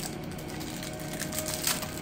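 Light, scattered clicks and crinkles of a package of facial wax strips being opened and handled.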